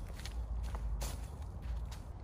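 A few footsteps on dry leaf litter and sandy ground, each step a short crackling scuff, over a low steady rumble.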